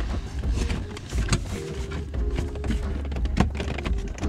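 Plastic lower dash trim panel of a 2000 Corvette being pulled loose by hand, giving scattered clicks and knocks, with two sharper ones about a second in and near the end, over a steady low hum.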